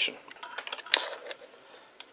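Light clicks and taps from a handheld two-way radio being handled, with one sharper click about a second in.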